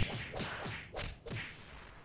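Logo-intro sound effect: a quick whip-like swish repeated about six times, roughly three a second, each repeat quieter than the last, like a whoosh echoing away until it fades out near the end.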